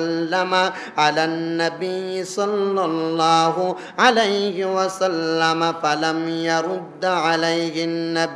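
A man chanting in a drawn-out melodic tune with long held notes, in the sung delivery style of a Bengali waz sermon.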